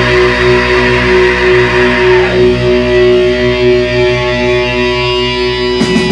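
Heavy metal band playing live, with a distorted electric guitar chord held and left ringing, and one note sliding down in pitch about two seconds in. The drums and full band come crashing back in near the end.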